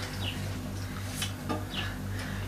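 A low steady hum, with a couple of faint clicks and two short, high chirps.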